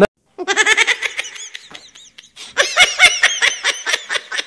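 A woman laughing hard in two bouts of rapid, high-pitched laughs, the first starting about a third of a second in and the second about two and a half seconds in.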